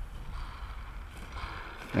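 Steady low rumble of wind buffeting the microphone on a gusty day, with no other distinct sound.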